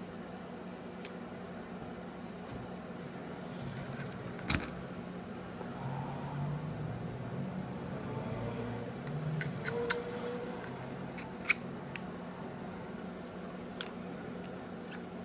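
Scattered small sharp clicks and taps of metal atomizer parts being handled, as the deck and top cap of a rebuildable dripping atomizer are worked on, over a steady low hum.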